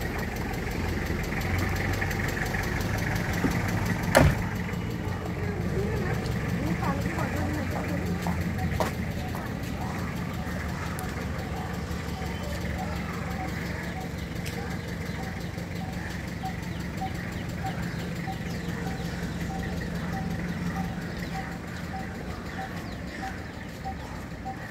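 Vehicle engine idling with a steady low hum, with one sharp click about four seconds in and a faint regular ticking about twice a second in the second half.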